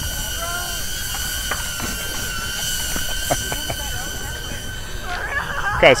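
Hover X1 palm-sized drone flying nearby, its propellers giving a steady high-pitched whine with several overtones while it follows its subject.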